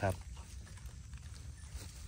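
Faint scratching and light rustling of a small tool digging into dry soil and leaf litter, with a few small scattered clicks, as wild mushrooms are dug out of the ground.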